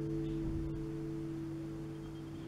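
Nylon-string classical guitar's closing chord ringing on and slowly dying away, with no new notes plucked.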